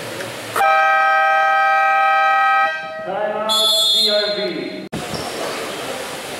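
Basketball game buzzer sounding one steady, loud blast of about two seconds, then a shout with a high shrill tone over it.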